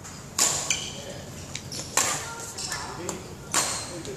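Badminton rackets striking a shuttlecock in a rally: sharp hits about one and a half seconds apart, each ringing briefly in the large hall.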